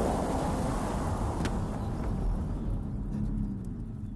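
Convertible car driving at speed, its engine running under a wash of wind and road noise that gradually fades, with a single sharp click about one and a half seconds in.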